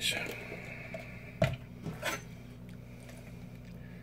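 A jar of mayonnaise handled at a table: a few sharp clicks and knocks as the screw lid comes off and is set down, and a table knife scoops into the mayonnaise, over a steady low hum.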